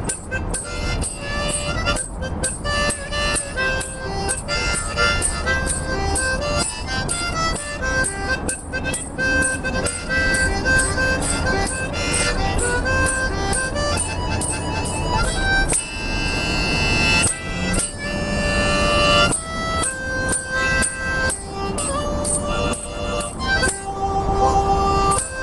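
Harmonica played with cupped hands: a melody of held notes over a steady, quick ticking beat. About two-thirds of the way through it sounds a loud, full chord for about a second.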